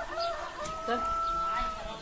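A rooster crowing once: a few short opening notes, then one long held note that drops off near the end.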